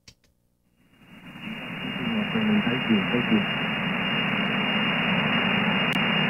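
Receiver audio from a software-defined radio tuned to 27.345 MHz in the 11-metre CB band: band noise hiss fades in about a second in and then holds steady, cut off above about 3 kHz by the receiver's filter. Faint traces of a weak, unreadable voice show under the hiss for a moment.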